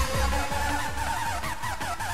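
Hard dance music from a DJ mix. The pounding kick drum thins out just after the start, leaving a fast, warbling synth riff that rises and falls about four times a second over a lighter beat.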